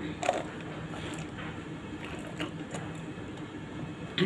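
Sipping water through a plastic straw and swallowing: a few short mouth clicks and gulps, the most distinct about a third of a second in, over a steady low hum.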